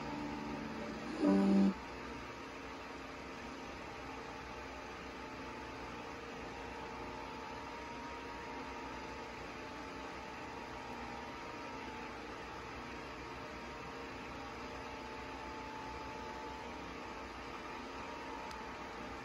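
A short closing musical note from the TV's speaker about a second in, then a steady low hum and hiss of room noise with faint steady tones under it.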